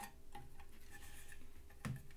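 Light clicks and taps of a sheet-metal cabinet cover being lifted off and handled, with a louder knock near the end.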